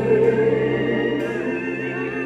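Gospel choir singing long held notes over sustained chords, with a couple of light strokes from a drum kit.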